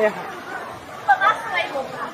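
People's voices chattering, with one voice rising louder about a second in, over steady background noise.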